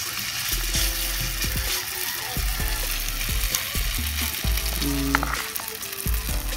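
Egg-and-flour batter with leftover vegetables frying in hot oil in a wok: a steady sizzle.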